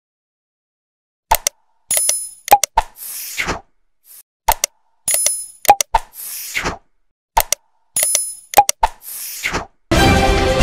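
Sound effects of an animated subscribe button: sharp mouse clicks, a bright bell-like ding and a whoosh, starting about a second in and repeating three times.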